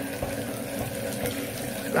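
Chrome waterfall bath mixer tap pouring water into a bath in a steady stream. It is running on cold only, because the lever is blocked from turning to hot.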